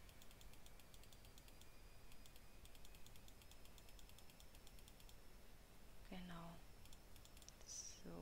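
Faint, quick clicking of a computer mouse and keyboard during work at the desk, running for about five seconds. A brief, wordless voice sound follows about six seconds in.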